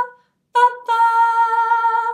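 A woman singing a melody unaccompanied on the syllable "ba": a held note dies away at the start, then a short note about half a second in and a long held note, the tune stepping down in pitch.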